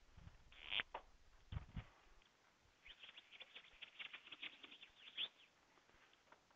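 Faint classroom background noise: a few soft knocks, then a quick run of small clicks and scratches from about three to five seconds in.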